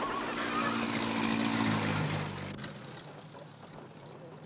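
Engine of a vintage open touring car running steadily, then dropping in pitch about two seconds in and dying away, as if slowing and shutting off.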